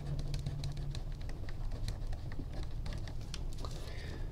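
Pen writing on graph paper: quick, irregular ticks and scratches of the tip as the words are written.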